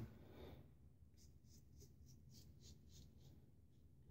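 Faint scratching of a Parker Variant double-edge safety razor with a Feather blade cutting stubble on the neck, in short strokes about four a second, starting about a second in.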